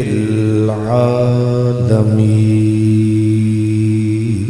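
A man's voice chanting a religious invocation in one long, drawn-out melodic note, with a small step in pitch about a second in and a brief break near the middle.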